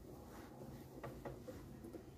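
Faint handling noise of hands working a crochet piece in t-shirt yarn: a few light ticks a little after the first second, over a low steady hum.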